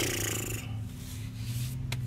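A man's heavy breath out, a sigh lasting about a second at the start, over a steady low hum. A single click just before the end.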